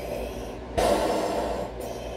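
One loud, drawn-out breath through a 3M half-face respirator, about three-quarters of a second in and lasting about a second, done as a Darth Vader-style breath.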